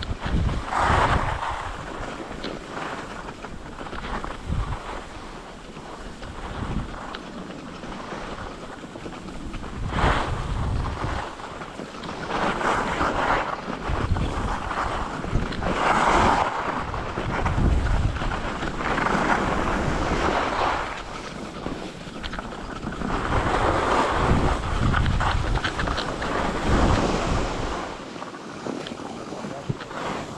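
Skis scraping and hissing over packed groomed snow through a series of turns, the hiss swelling and fading every few seconds, with wind buffeting the microphone.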